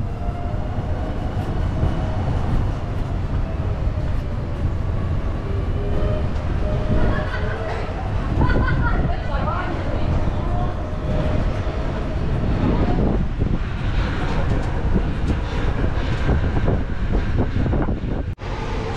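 An open tuk-tuk in motion: a continuous low rumble and rattle from the wheels and frame over a stone-paved street, with a faint steady motor hum.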